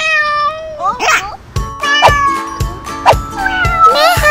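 Kitten meowing several times over background music with a steady beat.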